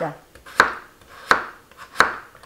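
Kitchen knife slicing a peeled potato into thin rounds on a wooden cutting board. Each stroke ends in a sharp knock of the blade on the board, three in all, evenly spaced at about one every two-thirds of a second.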